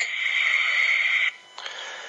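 Telephone-line hiss as the phone call ends: a loud, steady hiss that cuts off suddenly about a second in, leaving a much fainter hiss.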